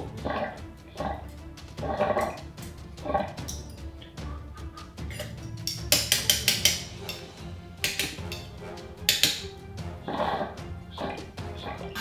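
A hookah being worked with coal tongs and its hose. Soft puffs are drawn and blown through the hose early on. About halfway through come a run of sharp metal clicks as the tongs tap the coals against the bowl, all over background music.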